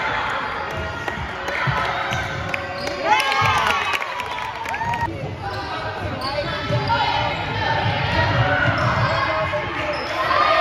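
A basketball bouncing and being dribbled on a wooden gym floor, with voices shouting in the echoing hall and a few brief high squeaks about three to five seconds in.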